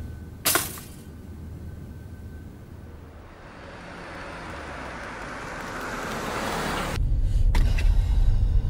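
A pop-up toaster springs up with a sharp metallic click about half a second in. A car's road and engine noise then builds steadily. Near the end it gives way to a louder, low engine and road rumble heard inside the car's cabin.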